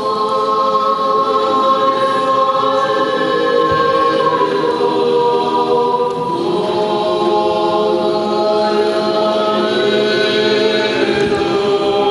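Orthodox church choir singing liturgical chant a cappella during a thanksgiving moleben, in long held chords that move to new pitches every few seconds.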